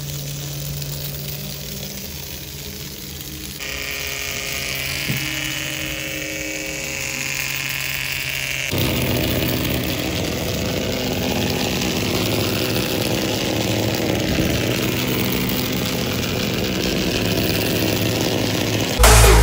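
Small DC toy motor spinning a plastic propeller on a battery-powered fan car, a steady buzzing whir. Its tone shifts abruptly twice, about 3.5 and 9 seconds in.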